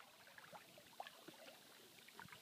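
Near silence with faint, scattered small water splashes and trickles from a Doberman wading through a creek; the most noticeable splash comes about a second in.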